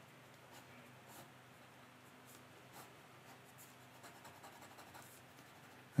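Faint scratching of a graphite pencil on watercolour paper in short, irregular strokes as an outline is sketched.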